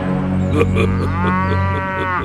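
A cow mooing: one long, low moo that stops near the end.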